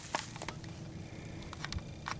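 Footsteps in dry leaf litter on a forest floor: a few faint, scattered crackles.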